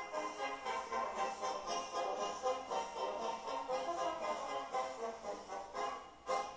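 A recorded dobrado, the Brazilian military-band march, playing with brass to the fore over a steady march beat.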